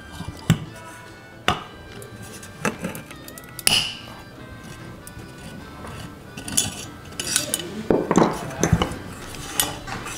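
Metal clicks and clinks of an Allen wrench working the set screw in the hub of a Scout II blower motor's squirrel-cage fan: four sharp clicks spaced about a second apart, then a denser rattle of the metal cage being handled near the end. Background music plays throughout.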